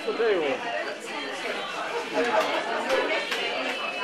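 Indistinct chatter: several voices talking over one another, with no clear words.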